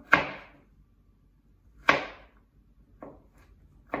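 Chef's knife chopping garlic cloves on a wooden cutting board: four separate blade strikes, two sharp loud ones about two seconds apart, then two fainter ones near the end.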